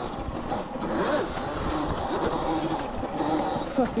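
Sur-Ron electric dirt bike running on a 72 V setup, its motor whine rising and falling in pitch with the throttle, over a steady rush of noise as the bike pushes through wet ferns and bushes.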